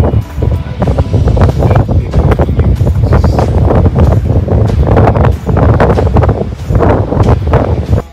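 Strong wind buffeting the phone's microphone, a loud gusting rumble that cuts off suddenly at the end.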